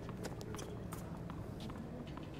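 Faint, irregular taps and footsteps on a hard tennis court between points, over low stadium background noise.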